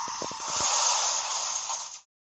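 Car crash sound effect: a few quick knocks in the first half-second over a long, harsh hiss that cuts off suddenly at the end.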